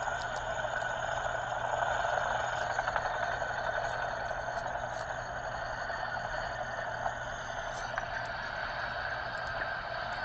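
Helicopter's engine and rotor running steadily on the ground, a constant rushing noise over a low hum, during a ground-resonance test with one rotor blade off balance.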